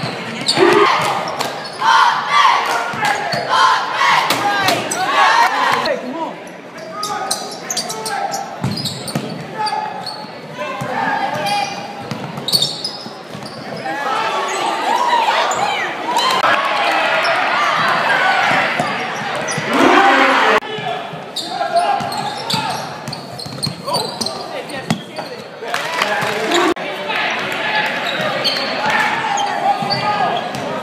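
Basketball game in a large, echoing gym: the ball bouncing on the hardwood court amid overlapping shouts and chatter from players and the crowd.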